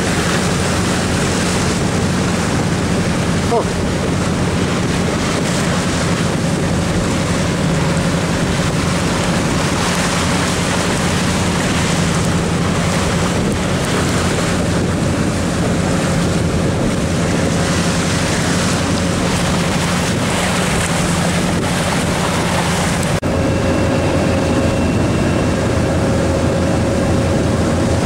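A fishing boat's engine running steadily underway, with water rushing past the hull and wind buffeting the microphone. About 23 seconds in, the engine note changes abruptly.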